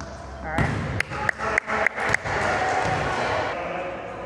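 Sounds of an indoor volleyball game in a large gym: a run of five sharp smacks about a third of a second apart, with players' and spectators' voices around them that swell after the smacks.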